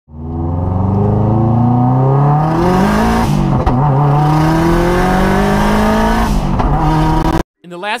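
Turbocharged all-wheel-drive Mazda Miata's engine accelerating hard, heard from inside the cabin. The pitch climbs steadily, falls at an upshift about three seconds in, climbs again, falls at a second upshift near the end, and then cuts off abruptly.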